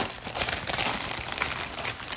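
Thin clear plastic packaging bag crinkling continuously as a padded fabric pouch is slid out of it by hand.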